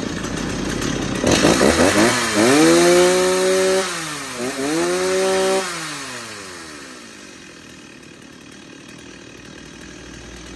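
Stihl 024 two-stroke chainsaw engine running low, then revved up to full throttle twice, each time rising to a high steady whine held for about a second. After the second rev it winds down in falling pitch and goes quiet about seven seconds in.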